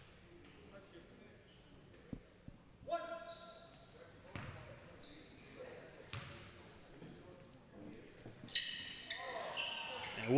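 Faint gym sound at a free throw: a basketball bounced a few times on the hardwood court, with scattered voices in a large hall. Short high squeaks come near the end as play starts up again.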